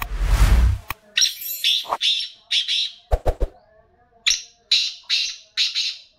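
A black francolin calling: a run of short, harsh notes in two phrases, the second of about four notes near the end. It opens with a loud rustling burst, and a few sharp knocks fall in the gap between the phrases.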